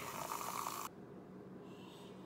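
Handheld battery milk frother whirring in a glass of matcha, a low steady whir that cuts off about a second in.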